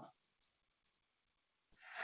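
Near silence: room tone, with a faint breath near the end.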